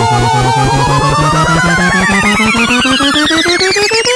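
Electronic dance music build-up: a synthesizer tone rising steadily in pitch over fast repeating beat pulses that get quicker.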